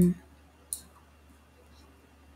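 The end of a spoken word at the very start, then one sharp click about three-quarters of a second in and a couple of faint clicks after it, over a low steady hum.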